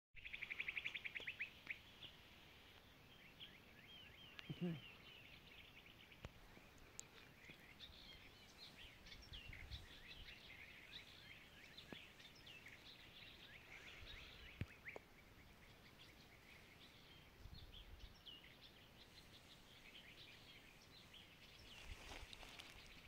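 Faint birdsong: many birds chirping in short, scattered calls, with a fast trill in the first second or two.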